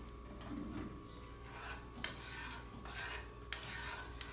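Faint scraping of a spoon stirring a milk and cornstarch mixture in an aluminium saucepan, with a couple of light clicks.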